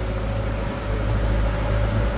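Boat engine running steadily: a low drone with a steady hum above it.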